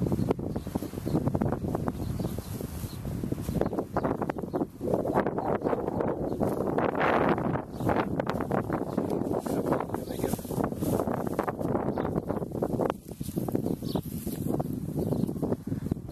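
Wind buffeting the camera microphone outdoors, a loud, uneven rumble that keeps swelling and dropping.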